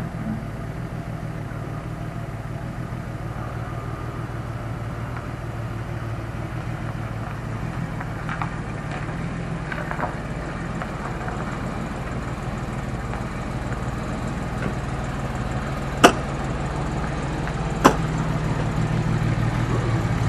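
Car engine running at low revs as a car towing a small caravan creeps closer, its steady hum growing gradually louder. Two sharp clicks near the end.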